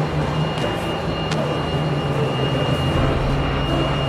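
Steady rumble of a ship under way, with wind noise on a camcorder microphone on deck. A thin, constant high whine runs through it.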